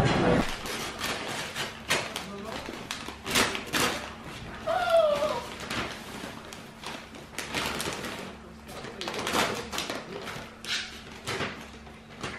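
Paper crinkling and rustling in short irregular bursts as a toddler handles and tugs at a large gift wrapped in paper, with occasional light knocks.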